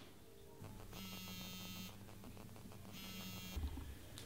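Smartphone buzzing with an incoming call: two buzzing bursts, each just under a second long and about two seconds apart, then a low thump near the end.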